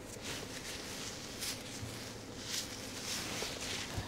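A few short, soft rustles, the sound of clothing or papers shifting, over a faint steady low room hum.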